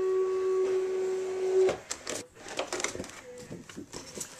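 Cricut cutting machine's motor running with a steady hum that cuts off a little under halfway through, as the cut finishes. A few light clicks and rustles of the paper and cutting mat being handled follow.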